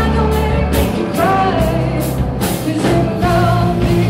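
Live rock band playing an electric-guitar riff over bass and drums, with repeated cymbal and drum hits.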